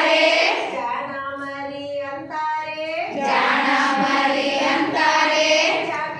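Women's voices singing an action song together. A thinner, clearer voice carries the tune from about one to three seconds in, and the fuller group sound returns after that.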